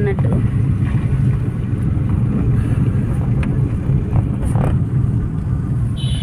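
Inside a car's cabin while driving: a steady low rumble of engine and road noise.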